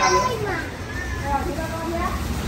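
Children's high-pitched voices chattering and calling out, mixed with a man's speech.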